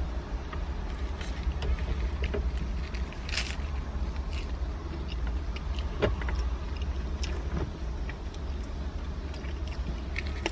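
Chewing on a crunchy hard-shell taco, with a few short crackles of the paper wrapper and sauce packet, over the steady low hum of a car idling.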